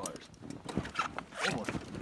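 Handlebars of an old Honda three-wheeler being forced straight: several short rasping, creaking strokes as the bent bars shift under strain, with a man's straining "oh" near the end.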